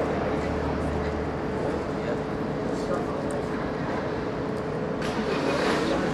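Street ambience: steady traffic noise with a constant hum, and faint, indistinct men's voices talking, with a brief swell in the noise about five seconds in.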